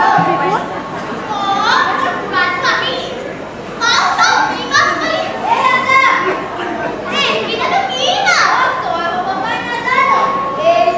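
Children's voices speaking and calling out their lines, high-pitched and lively, picked up in a large hall.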